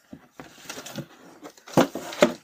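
Cardboard packaging rustling and scraping as a leaf blower is handled and a cardboard insert is pulled from its box, with scattered light clicks and one louder clack near the end.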